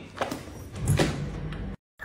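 Low background room noise with a few faint clicks, cut off by a moment of dead silence near the end.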